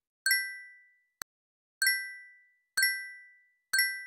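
A chime sound effect: four bright bell-like dings about a second apart, each struck and fading away, with a single short click about a second in.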